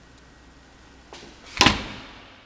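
A louvered closet door being shut: a small knock about a second in, then one sharp bang as it closes, dying away quickly.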